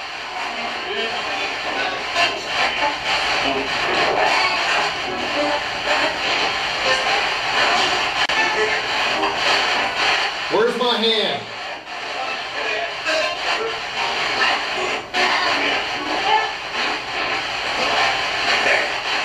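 Spirit box sweeping through radio stations: a steady wash of choppy static broken by brief snatches of broadcast voices and music, with one clearer voice-like fragment about ten and a half seconds in.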